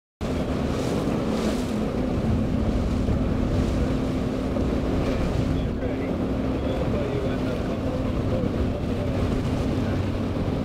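A motorboat engine running steadily with a low hum, under wind buffeting the microphone and the wash of choppy water. It cuts in abruptly just after the start.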